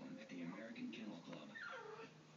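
A dog whimpering, ending in a whine that falls in pitch near the end, heard over faint background speech.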